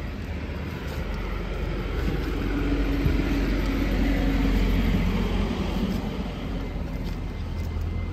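Street traffic: a motor vehicle's engine over a low road rumble, growing louder to a peak in the middle and fading again, as if passing close by.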